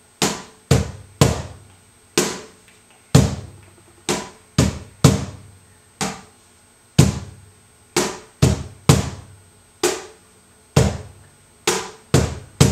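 Cajón played by hand in a slow tientos compás: deep bass-tone strikes that each ring out, in a repeating pattern of about five strokes every four seconds. The bass accents dominate, with the snare kept very light.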